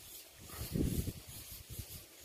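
A metal pot being dipped into a shallow water hole and scooping up water, with a low slosh about a second in.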